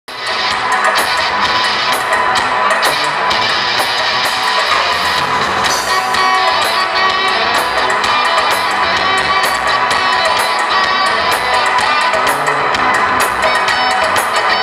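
A live cumbia band playing on stage: a horn section of saxophones and trumpet with keytar over a steady percussion beat. The music starts abruptly at the very beginning and runs on at full level.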